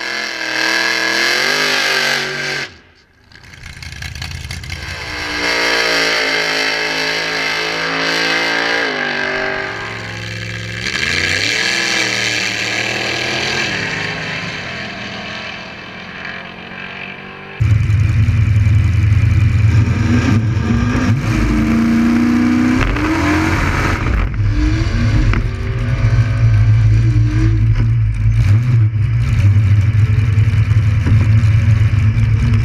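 A drag car's engine at full throttle down the strip, its pitch climbing and dropping several times as it pulls through the gears and fades with distance. Then a sudden cut to the same kind of big engine idling loud and rough close to the microphone.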